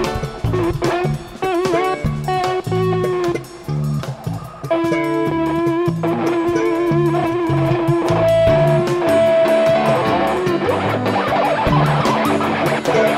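A live rock band plays an instrumental passage: electric guitar holds long wavering notes over pulsing bass guitar and drums, then turns to busier, faster playing near the end.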